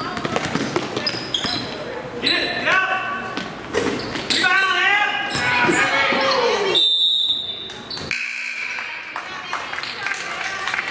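Indoor basketball game play in a gym: a ball bouncing on the hardwood with sneaker squeaks and shouting voices. A referee's whistle sounds about seven seconds in, after players collide and one goes to the floor.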